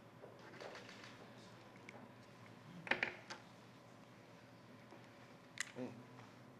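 Quiet room tone broken by a few short, sharp clicks and taps: two or three close together about three seconds in, and another pair near the end.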